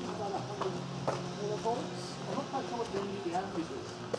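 Steady low hum of large outdoor electrical machinery, the enclosed motor-generator sets that power the transmitters, with a few footsteps on concrete.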